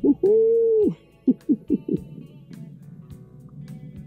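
A man's long excited call held for most of a second, then four short calls in quick succession, over background guitar music.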